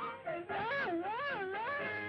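A wailing tone on an old cartoon soundtrack, its pitch wobbling slowly up and down about three times; it comes in about half a second in, after a short bit of band music, and fades out at the end.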